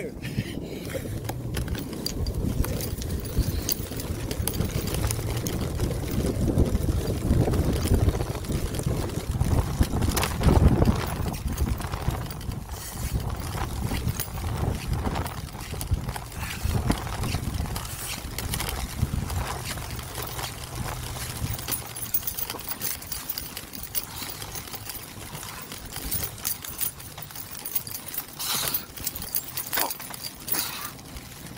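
Electric-assist bike riding along a snow-covered trail: a steady low rumble of tyres over snow and wind on the handlebar-mounted microphone, with frequent small knocks and rattles from the bike. A low steady hum runs under it until about two-thirds through, and the ride grows quieter in the second half.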